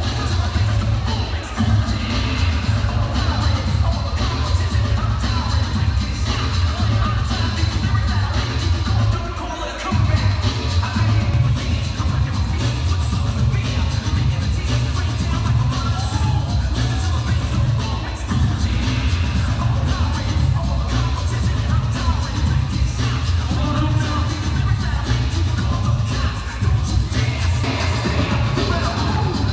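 DJ music with a heavy bass line played loud over the PA, with a brief drop in the bass just before the middle.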